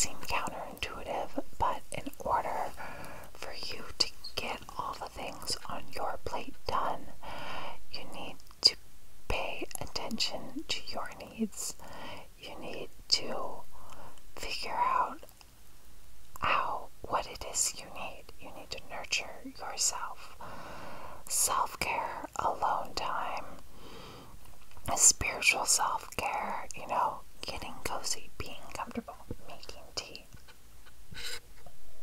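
A woman's close-up inaudible whispering, with frequent small clicks.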